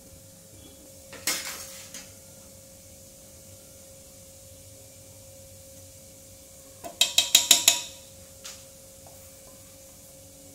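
Small stainless steel cup clanking against a steel mixing bowl while spices are tipped in: one ringing clank a little over a second in, then a quick run of about seven taps near the end.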